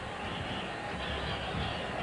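Steady, low background murmur of a packed baseball stadium crowd, heard under the hiss of an old broadcast tape.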